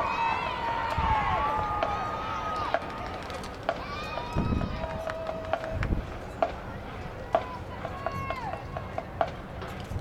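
Scattered long calls and whoops from people in the stands, each rising, held and falling away, with a few sharp clicks in between.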